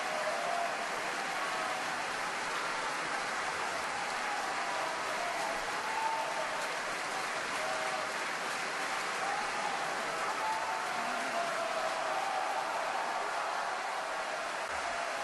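Large opera-house audience applauding in a sustained, steady ovation, with scattered voices calling out from the crowd.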